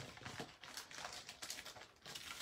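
Faint rustling and a run of small light clicks as a sheet of foam adhesive dimensionals is picked up and handled.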